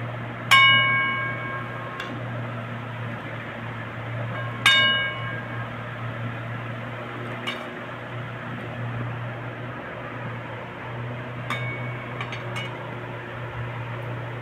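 A steel ladle clinking against stainless-steel dishes while curry is served: two loud ringing clinks about four seconds apart, then a few lighter clinks near the end. A steady low hum runs underneath.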